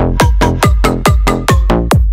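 Electronic dance music from a bounce-style bootleg remix: a loud, pounding kick about twice a second under short, bouncy pitched synth stabs, with no vocals.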